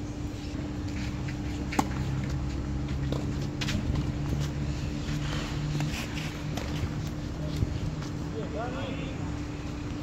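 Rackets hitting a tennis ball during a rally: a few sharp pops several seconds apart, the loudest about two seconds in. They sit over a steady low hum and rumble. Brief voices come near the end.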